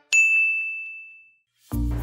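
A single bright ding: a bell-like chime struck once, ringing as one clear high tone that fades away over about a second and a half.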